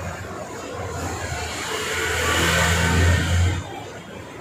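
A motor or engine hum grows louder over about two seconds, then cuts off sharply near the end.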